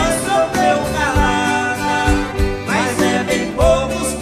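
Live sertanejo (Brazilian country) song: a singer over guitar and band with a steady beat of bass and drum.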